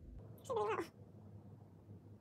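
A cat meows once, briefly, about half a second in, over faint room tone.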